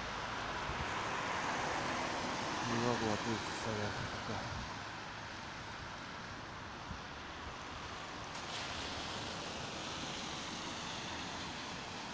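Road traffic passing on a wet, slushy road: a steady rush of tyres and engines from cars and a van going by.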